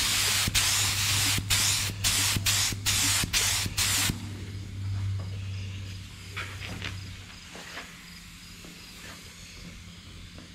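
Paint spray gun spraying candy paint in a rapid run of short hissing bursts, about eight, which stop about four seconds in. A steady low hum runs underneath until about seven seconds in. The painter feels the gun is giving him problems and not laying the colour on well.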